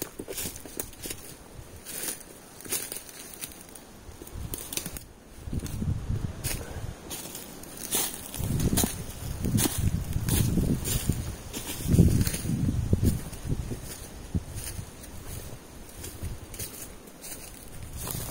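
Footsteps on dry leaf litter and twigs: an irregular crunching and rustling with dull thuds, heaviest in the middle.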